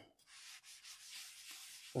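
A whiteboard eraser rubbing over a whiteboard, wiping off marker writing: a faint, uneven scrubbing.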